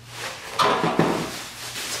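Large plastic bag rustling and crinkling as a whole raw turkey is pushed down into it, loudest about half a second and a second in.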